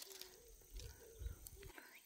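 Near silence outdoors, with a faint low rumble through the middle that dies away suddenly near the end.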